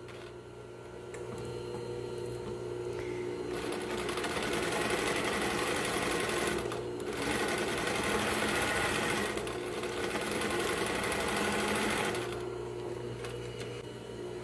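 Industrial sewing machine stitching a seam in two runs, with a brief pause about seven seconds in, and stopping about twelve seconds in. A steady low hum runs underneath throughout.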